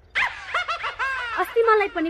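A person laughing in a quick run of high, falling syllables, giving way to speech near the end.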